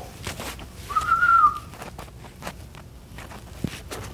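A person whistling one short note that rises slightly and falls, about a second in, amid rustling of bedding and a few soft knocks.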